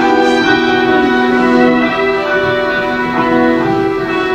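String ensemble of violins and cellos playing a Christmas carol live, in slow, held chords.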